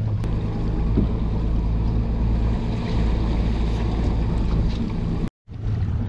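A boat's engine running steadily under wind on the microphone and water sloshing against the hull, broken by a brief dropout about five seconds in.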